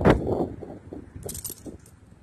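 Bicycle in motion over rough pavement: a sharp knock at the start, then rattling that dies down, with a brief light metallic jingle about a second and a half in.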